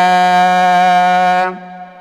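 A man's voice chanting a xasiida, an Arabic devotional poem, holding one long steady note at the end of a line; it fades out about a second and a half in.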